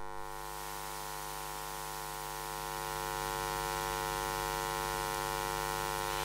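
Steady electrical mains hum with a stack of overtones over a hiss, picked up in the audio line, growing slightly louder about two to three seconds in.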